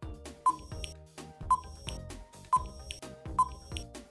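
Quiz countdown timer sound effect: four short high beeps about a second apart, over light background music.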